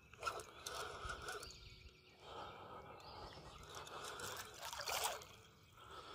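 Water splashing and sloshing in two faint spells, with a short lull in between, as a hooked largemouth bass thrashes at the surface beside a kayak.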